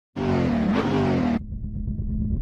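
Car engine revving, its pitch rising and falling, cut off suddenly after about a second, followed by a low rumble.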